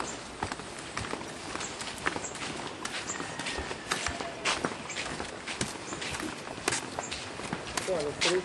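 Footsteps on a concrete path: a steady walking pace of about two steps a second.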